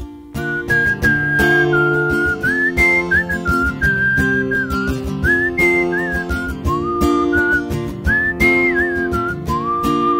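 A whistled melody, sliding between notes, over sustained guitar chords in an instrumental passage of a song. The music cuts out briefly at the very start, then the guitar and whistling come in.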